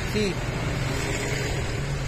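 A motor vehicle's engine running nearby: a steady low hum with a broad rush of noise over it, under a single spoken word at the start.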